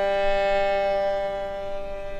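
Classical violin recording with orchestral accompaniment: a long note and chord held steadily, unchanging in pitch.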